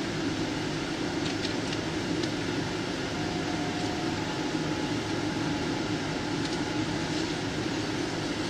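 Steady drone of a stationary police patrol car running, engine and air-conditioning fan, heard through its dashcam microphone, with a few faint ticks.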